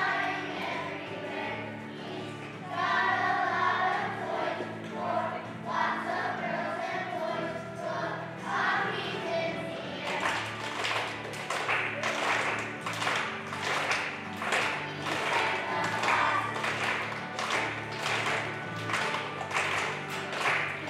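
Children's choir singing a song over steady instrumental accompaniment. About halfway through, the singers start clapping in time, about two claps a second.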